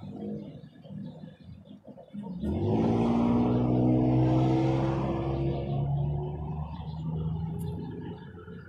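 A road vehicle passing on the street, its engine rising in pitch as it speeds up about two and a half seconds in, then running steady and loud for a few seconds before fading.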